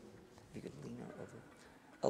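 Faint, brief voice sounds without clear words, from about half a second in to just past a second.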